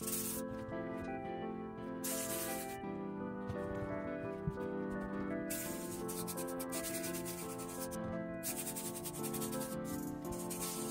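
Background music of sustained notes, with a steam iron hissing in several stretches of a second or two as it is pressed over a damp towel on a leather sneaker.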